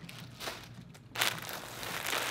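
Clear plastic poly bags crinkling as bagged beanies are handled and stacked, quiet at first, then louder from just over a second in.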